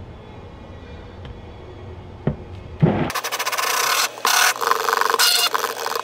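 KitchenAid stick blender switched on about three seconds in, running loud and rough as it blends blue colorant into cold process soap batter.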